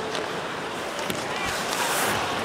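Ice hockey arena sound during live play: steady crowd noise with a few faint clicks from sticks and puck, growing slightly louder toward the end.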